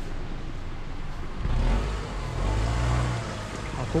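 Small kei car driving slowly up a narrow lane a few metres ahead, its engine running at low speed and pulling away. The engine sound swells about halfway through.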